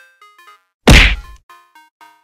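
Cartoon punch sound effect: a single loud whack about a second in, as one character knocks another to the ground. Under it runs a soft background melody of short notes.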